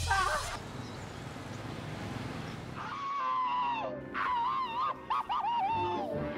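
Cartoon soundtrack from a television: soft hiss, then from about three seconds in a series of high, warbling sounds.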